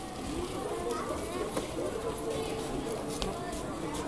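Indistinct chatter of several people's voices, with a few light clicks.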